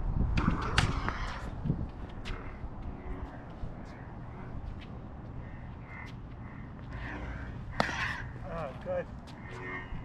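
Combat lightsaber blades, hard polycarbonate tubes, clacking together as two fencers exchange blows. There is a quick cluster of sharp clacks in the first second, another at about two seconds, and the loudest single hit about eight seconds in.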